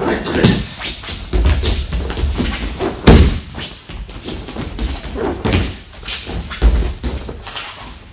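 A person rolling again and again on a padded training mat, with repeated thuds of the body hitting the mat and rustling of clothing in between. The loudest thud comes about three seconds in.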